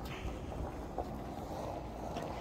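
Faint steady outdoor background noise with a low rumble, and one light click about a second in.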